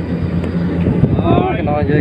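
Steady low engine hum of a Kubota rice combine harvester at work, with wind on the microphone and a man talking over it in the second half.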